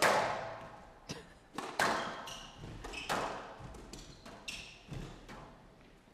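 Squash ball being struck back and forth in a rally on a glass court: about six sharp, echoing cracks of ball on racket and walls, the loudest at the very start, with short high squeaks of court shoes on the floor in between.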